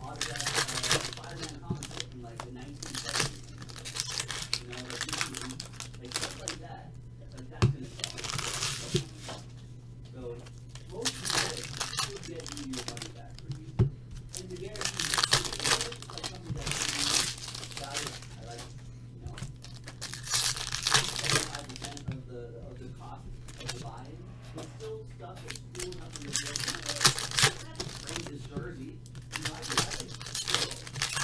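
Foil hockey-card pack wrappers crinkling and tearing in repeated bursts as packs are ripped open and the cards handled, over a steady low hum.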